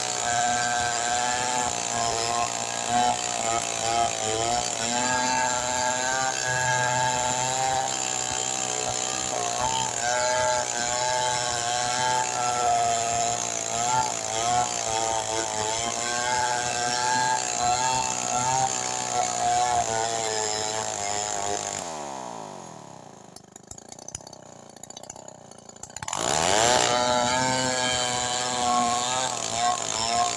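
Stihl 070 two-stroke chainsaw ripping a waru log lengthwise under load, its engine note wavering as the chain bites. About 22 seconds in the throttle is let off and the engine falls to a quiet idle for a few seconds, then it revs sharply back up and goes on cutting.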